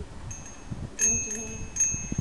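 Bicycle bell ringing, struck three times: a bright ding about a third of a second in, again about a second in and near the end, each ring holding on between strikes.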